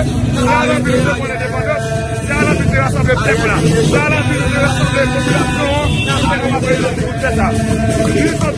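A group of marching protesters chanting in unison, with notes held in a sing-song way and the nearest voices loud and close, over the rumble of the street crowd.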